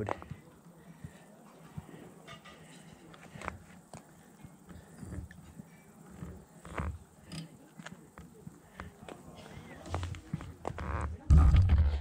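Quiet open-air ambience with scattered faint clicks and rustles. Near the end a loud low wind rumble on the microphone takes over as the bike gets moving.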